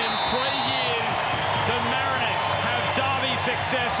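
Referee's pea whistle blown for full time, a long trilling blast that wavers and fades within the first second. It is followed by the home crowd cheering and clapping.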